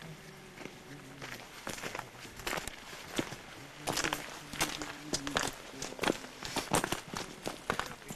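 Footsteps of several people walking on a path of dry fallen leaves and stones, irregular crunching steps that grow louder and closer together about halfway through.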